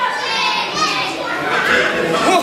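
Wrestling audience, children's voices among them, shouting and calling out, several voices at once.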